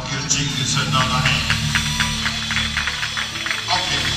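Live band music: sustained bass and keyboard tones under a quick, steady beat of evenly spaced percussive strikes.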